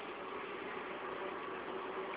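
Steady background noise with a faint hum and no distinct event.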